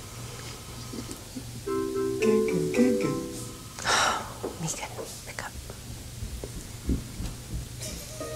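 A woman's quiet laughter and soft, breathy murmuring over faint background music, with a low steady hum.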